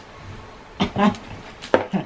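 A few light knocks and a sharp clack, about three-quarters of the way through, from objects being moved about under a wooden bed, with short bits of voice in between.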